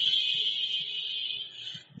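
A high, steady electronic tone, a sound effect in the slideshow's soundtrack, fading out near the end.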